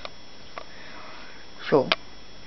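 Quiet room tone with faint hiss and a single faint click about half a second in, then a man's voice saying "so" near the end.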